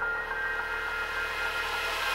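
Electronic dance track in a breakdown: held synth chords with no drums or bass, and a hiss of noise slowly swelling in the highs as a build-up.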